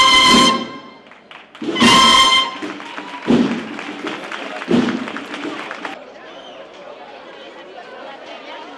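Processional brass band finishing a march: the held final chord cuts off just after the start, and a short loud brass chord sounds about two seconds in. Two low thumps follow, about a second and a half apart, then a crowd chattering.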